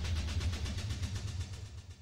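Dramatic background score: a low rumbling drone with a rapid, even pulse, fading out near the end.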